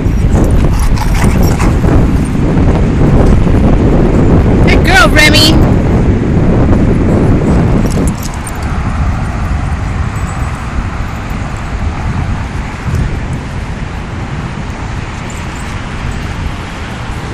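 Wind rumbling on the microphone, heavy for the first half and then lighter, with one brief high-pitched squeal falling in pitch about five seconds in.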